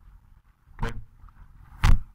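Quiet room tone, broken about a second in by a short spoken "okay" and, near the end, by a brief loud thump.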